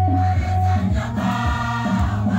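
A large choir singing a Nuer gospel song in unison, with a steady deep tone held under the voices.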